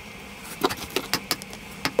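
A handful of light, sharp metallic clicks and clinks, scattered irregularly, as small metal knife parts are handled against a metal block.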